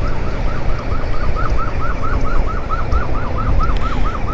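Electronic yelp siren of an emergency vehicle, a rapid warble of about five rises and falls a second that fades in near the start. Under it runs the steady low rumble of the moving scooter's engine and wind.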